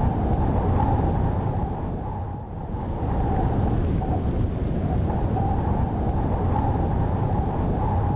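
Steady low rumbling noise with no music, dipping briefly about two and a half seconds in.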